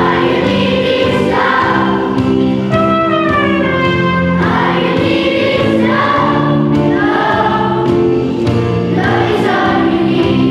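A large children's choir singing together, holding long notes.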